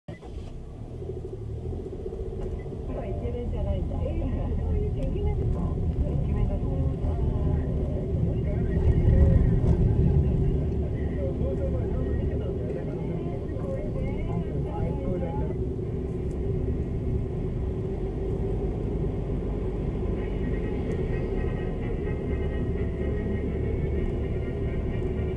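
Suzuki Lapin kei car driving, heard from inside the cabin: steady low engine and road rumble that builds over the first few seconds and is loudest about nine seconds in. A voice from the car radio talks faintly under it for much of the first half.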